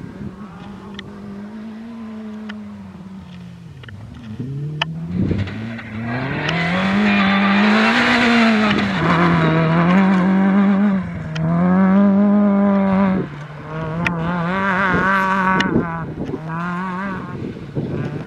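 Rally car engine at full throttle on a gravel stage, its pitch climbing and falling again and again with gear changes and lifts off the throttle. It grows loud through the middle as the car passes close, cuts back sharply once, then pulls away again.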